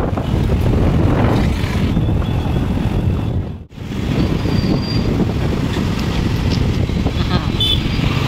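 Wind buffeting the microphone together with road and traffic noise while riding a two-wheeler through city streets, a dense low rumble. It drops out sharply for a moment about halfway through.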